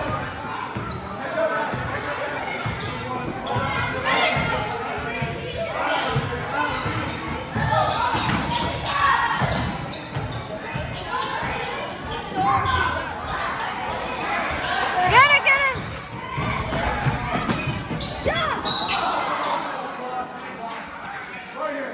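A basketball being dribbled on a gym floor, each bounce echoing in a large hall, with voices calling out over the play.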